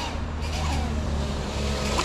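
A steady low motor hum with a few faint, level tones above it.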